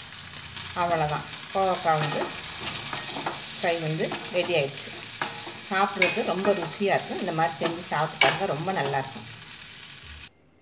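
A steel spoon stirring and scraping an ivy gourd stir-fry around a hot kadai, with the oil sizzling under it: repeated short scrapes of metal on the pan, one after another.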